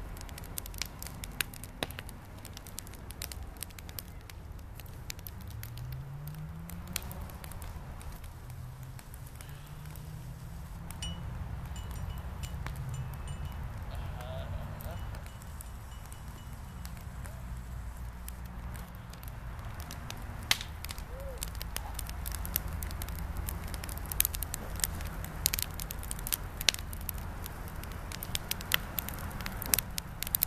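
Wood bonfire burning: a steady low rumble with scattered crackles and sharp pops, the pops coming thicker and louder in the last third.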